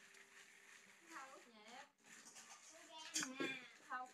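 Quiet room with faint, brief speech from people nearby, in two short snatches around the middle and near the end.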